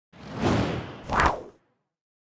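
Whoosh sound effect for an animated outro transition: a swell of rushing noise that builds to its loudest about a second in, then dies away, leaving silence for the last part.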